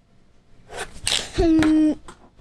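A person sneezing: a breathy rush, then a loud, flat-pitched voiced burst held for about half a second that ends abruptly near the end.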